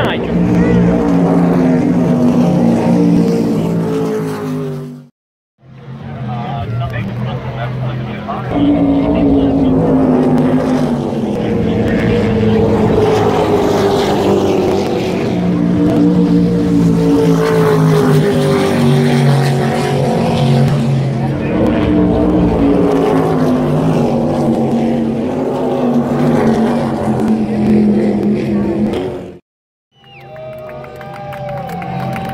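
Offshore racing powerboat engines droning across the water, several pitches at once, each slowly falling as the boats run past. The sound cuts out briefly about five seconds in.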